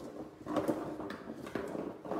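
Marbles rolling and clattering in a box as it is tilted back and forth, with many small irregular knocks against the box's sides; they are rolling through wet paint, leaving marble-painting trails.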